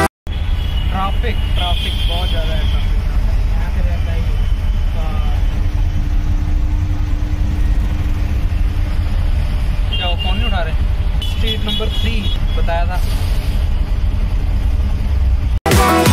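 Riding inside an auto-rickshaw in city traffic: the engine and road noise make a steady low rumble, and vehicle horns honk briefly about two seconds in and again several times between about ten and thirteen seconds in.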